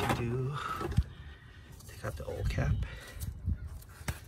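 Faint handling knocks and clicks at a car engine's valve cover, with a sharp click about a second in and another at the end as a gloved hand takes hold of the plastic oil filler cap.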